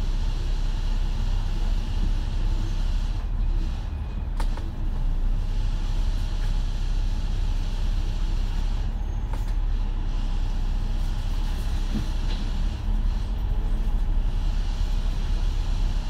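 Double-decker bus's diesel engine running at low revs, a steady low rumble heard inside the upper-deck cabin as the bus crawls in heavy traffic, with a couple of brief rattling clicks.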